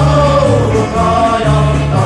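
Finnish pelimanni folk band playing a song, with voices singing over a bass that steps between two notes about twice a second.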